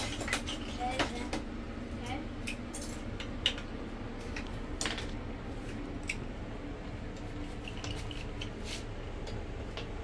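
Loose plastic Lego bricks clicking and clattering as a child picks through and handles them; irregular scattered clicks, the sharpest a few seconds in.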